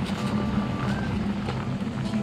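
Steady rumbling of a pot of curry noodle soup at a rolling boil over a gas burner.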